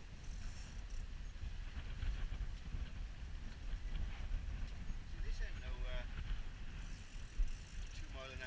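Wind buffeting the microphone in the open air, an uneven low rumble that runs throughout. A man's voice comes through briefly about five and a half seconds in.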